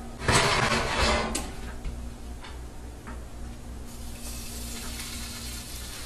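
Kitchen handling sounds: a short clattering scrape of cookware about half a second in, then a steady low hum, with a faint steady hiss starting about four seconds in.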